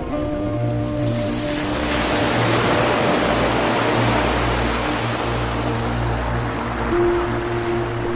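Ambient music of slow held tones, with a sea wave washing onto rocks that swells from about a second in and ebbs away near the end.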